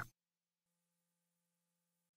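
Near silence, with a very faint low steady hum and hiss coming in about two-thirds of a second in.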